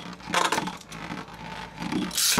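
A Beyblade spinning top spinning on the floor of a clear plastic stadium, its tip whirring and scraping against the plastic, with a brief clatter about half a second in.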